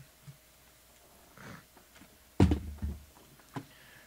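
Handling noise from a shrink-wrapped trading card box being picked up to be opened. A faint rustle, then a sudden thump with a short rustle a little past halfway, and a single click near the end.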